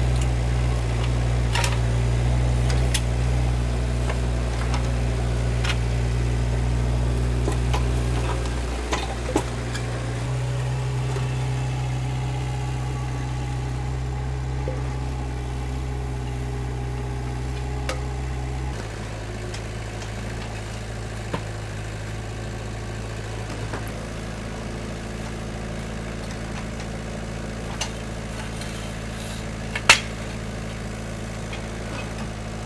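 Engine of a tracked Vermeer mini skid steer running steadily while its grapple pulls old footings out of the ground, with a few scattered knocks. The engine note shifts about a third of the way in and drops quieter about two-thirds of the way through.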